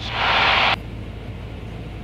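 A loud burst of static hiss, like a radio or intercom squelch break, for under a second, cutting off suddenly. Under it the light aircraft's piston engine drones steadily, heard through the cockpit headset intercom.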